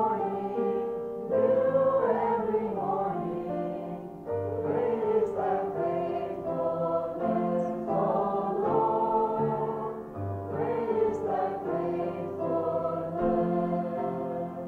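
A small group of girls singing a worship song together through a church sound system, over an accompaniment of steady held chords.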